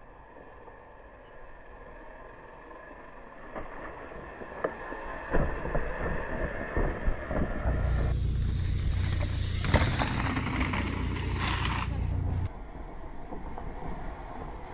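A mountain bike's tyres rolling over loose gravel and rock, with scattered crunches and clicks. About eight seconds in, a louder low rumble with hiss comes in and lasts some four seconds.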